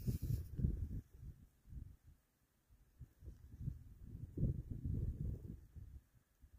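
Wind buffeting the phone's microphone: a low, uneven rumble in gusts, strongest in the first second and again over the last two or three seconds.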